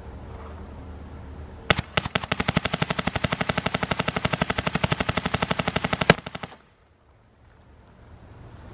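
Empire Axe 2.0 electronic paintball marker firing a rapid string of shots, about a dozen a second, for about four and a half seconds. It starts about two seconds in and stops suddenly.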